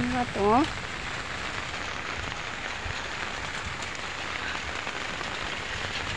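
Steady rain falling on an open umbrella overhead and a wet road, an even hiss that holds throughout. A short rising voice sounds in the first second.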